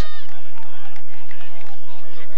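Distant, overlapping shouts and calls of hurling players and spectators around the pitch, with no single voice standing out.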